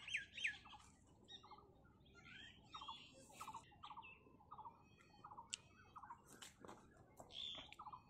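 Faint calls of wild birds: a short chirp repeated about once or twice a second, with scattered higher twittering and a few thin, high whistles.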